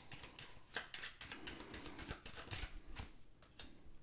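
Tarot cards being handled: a run of faint clicks and rustles as cards slide off the deck and are laid on the table, thinning out near the end.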